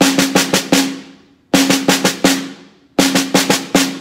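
Snare drum played with wooden sticks: three five stroke rolls, each two double bounces followed by a single tap, about a second and a half apart, played smoothly as one connected figure.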